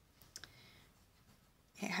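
A pen on paper: a few quick clicks about a third of a second in, then faint sounds of the pen moving until speech begins near the end.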